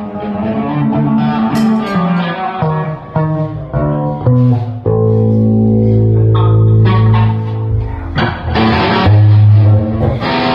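Electric guitar and bass guitar playing a riff together: a run of short changing notes, then a long held chord about five seconds in, then a strong low note near the end.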